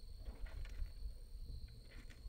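Faint rustling and small clicks of a hand rummaging inside a plastic water jug for bullet fragments, over a low wind rumble on the microphone.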